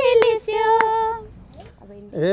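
A woman singing a Nepali folk song (dohori) without accompaniment, holding the end of a line until it fades about a second in, with two sharp hand claps keeping time.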